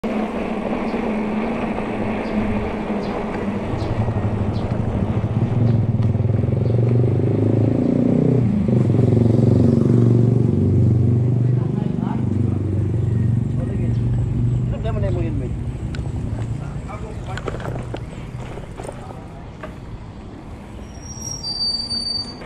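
Steady hum of a motor vehicle's engine over road and wind noise. It is loudest about halfway through and dies down over the last few seconds.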